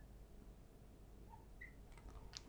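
Near silence, broken by two faint, brief squeaks of a marker on a glass board, a little past halfway and again near the end.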